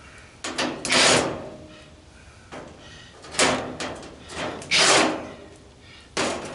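Cordless driver with a quarter-inch nut-driver bit spinning out sheet-metal screws from a dryer's cabinet panel, in several short bursts: one about a second in, then a cluster of bursts between three and a half and five seconds in.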